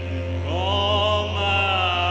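Didjeridu playing a steady low drone, with a higher melodic line above it that slides up about half a second in and then holds.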